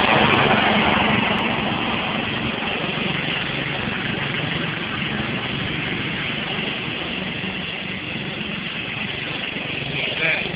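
Riding lawn tractor's small engine running as it drives past, loudest at the start and fading over the first few seconds as it moves away, then running steadily at a distance.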